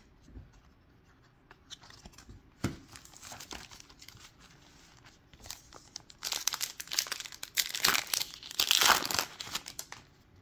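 Topps Chrome trading-card pack wrapper crinkling and tearing as it is ripped open by hand. After a few light handling clicks, the crinkling and tearing builds up densely in the last few seconds.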